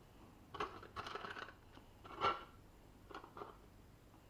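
Light handling noises on a workbench as small gun parts and cleaning supplies are moved: a few soft clicks and taps, a short rustle about a second in, a louder scrape just past two seconds, and a couple more clicks near the end.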